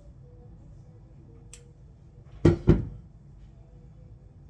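Two sharp knocks in quick succession, about a quarter second apart, over a faint steady hum.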